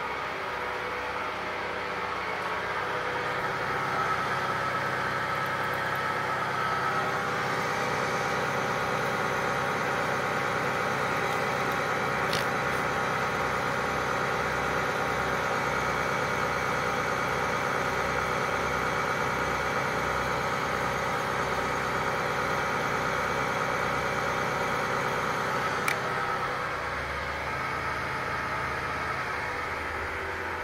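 Wells-Index 520CEN CNC knee mill milling a slot in a stainless steel disc: the SEM motor driving the spindle and the feed motor run with a steady whine and hum as the end mill cuts. A sharp tick comes about 12 seconds in and another about 26 seconds in.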